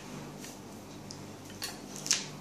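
Three faint, short scratches of a felt-tip sketch pen drawing short lines on paper, the sharpest near the end, over a steady low hum.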